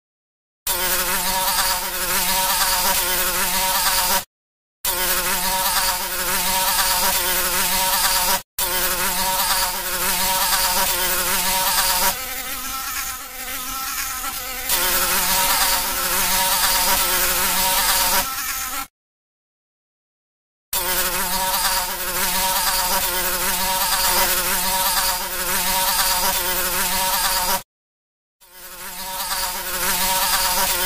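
A fly buzzing in flight: a steady droning buzz whose pitch wavers slightly. It cuts off into dead silence several times, the longest break about two seconds, and runs quieter for a few seconds midway.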